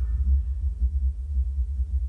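A film trailer's soundtrack closing on a deep, low bass rumble that wavers in level, with almost nothing higher above it.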